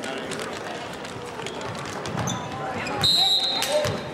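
Basketballs bouncing on a hardwood gym floor among crowd chatter, then a short, shrill referee's whistle blast about three seconds in, the loudest sound, stopping play for a call.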